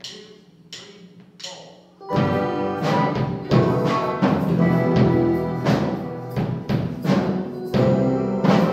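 Drumsticks clicked together as a count-in, three even clicks, then a student band comes in about two seconds in with drum kit and bass guitar, playing a steady beat.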